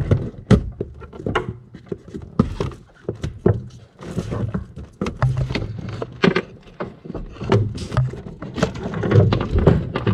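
Irregular knocks, clatters and rubbing as a Volvo 740's engine wiring harness, with its plastic connectors, is dragged through a tight opening into the engine bay and snags on the way.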